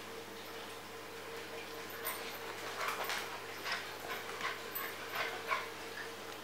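Bearded collie playing on a tiled floor, making a string of short, soft sounds, two or three a second, from about two seconds in. A faint steady hum runs underneath.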